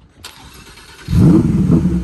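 Lamborghini Huracán V10 starting up: a brief whir of cranking, then about a second in the engine catches with a loud rev flare that rises and falls in pitch, settling toward a steady idle near the end.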